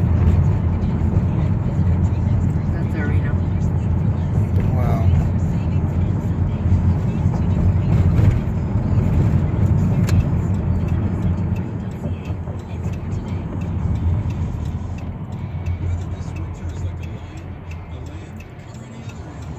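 Steady low rumble of road and engine noise inside a moving car's cabin, growing quieter over the last several seconds as the car eases off.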